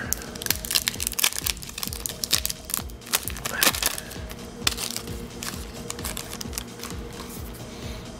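Thin clear plastic wrapper crinkling and crackling as it is handled and pulled open by hand, in many quick sharp crackles. Faint background music under it.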